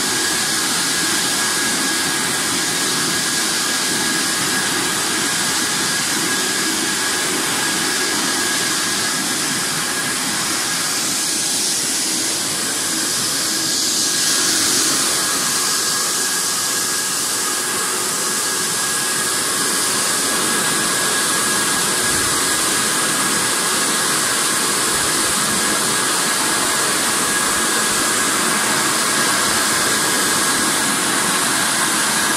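Date washing and drying machine running: a steady rush of air from its drying blowers, blowing through the hoods over wet dates on the mesh conveyor, with a thin steady whine throughout.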